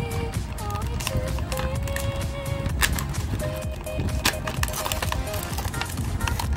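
Background music with long held melody notes, over sharp crackles and clicks of a clear plastic blister pack being bent and pried open by hand.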